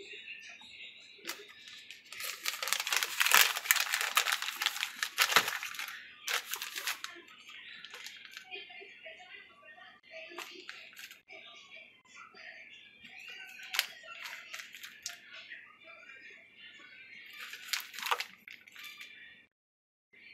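Crackly rustling handling noise while pepperoni slices are laid on a pizza, loud for about four seconds near the start, then quieter scattered clicks and rustles. Faint music plays in the background.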